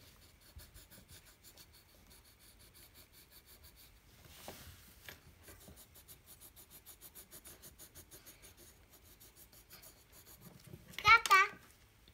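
Pencil scratching on paper in quick, faint back-and-forth strokes as a child colors in a letter S. Near the end there is a short, high-pitched vocal sound from a child.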